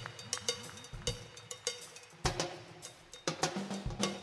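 Background music: a drum and percussion passage, a quick run of sharp drum hits with short falling-pitch drum strokes and a louder hit a little over two seconds in.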